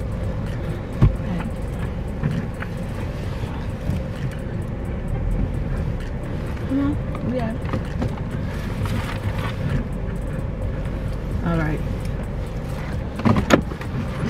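Low, steady rumble of a car's engine and tyres heard from inside the cabin as the car creeps into a parking space, with a sharp click about a second in.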